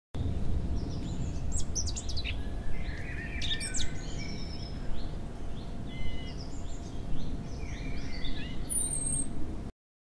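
Several birds chirping and singing in quick, overlapping short notes over a steady low background rumble; the sound cuts off abruptly shortly before the end.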